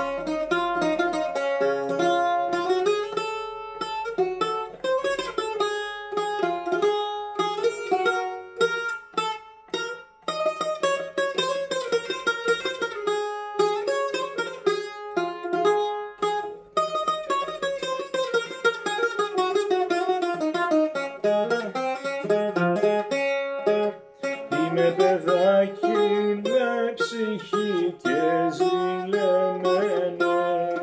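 Solo Greek bouzouki, plucked with a pick, playing a quick, ornamented rebetiko melody with no singing.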